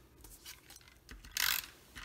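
Adhesive tape runner drawn across cardstock: faint paper handling, then one short scratchy stroke of the runner about one and a half seconds in.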